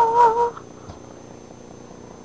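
A short, high, slightly wavering vocal note that cuts off about half a second in, followed by steady low background hiss.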